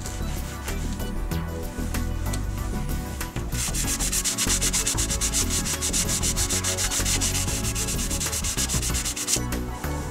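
Hand sanding of a painted car bumper with an 80-grit foam sanding pad, feathering the edge of a paint chip flat. The short back-and-forth strokes are light at first, then become faster and louder about three and a half seconds in, and stop shortly before the end.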